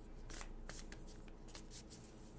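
A deck of oracle cards being shuffled by hand: faint, irregular soft flicks and rustles of card stock.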